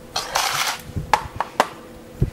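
Bar utensils being handled on a stainless steel bar counter: a short rustling scrape, then a few sharp clicks and knocks.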